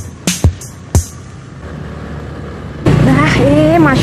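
Background music with sharp drum hits in the first second, then a quieter stretch. About three seconds in the sound cuts to the loud, steady engine noise of a moving motorcycle, with a voice over it.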